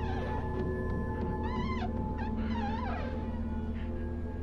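Sound-design drone of steady low sustained tones, with high cries laid over it that waver and slide up and down in pitch: one near the start and two longer ones in the middle.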